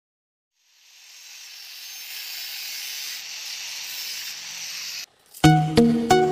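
A hiss fades in about a second in, holds steady and cuts off suddenly after about five seconds. Background music with sharp plucked notes starts near the end.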